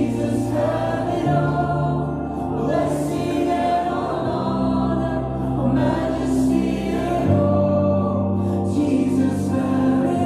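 Slow worship music: long held chords that change every few seconds, with voices singing over them.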